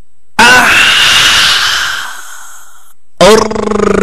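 Film soundtrack sound effects: a sudden loud hit with falling pitch that fades away over about two seconds. Near the end comes a loud, low droning tone with a fast flutter.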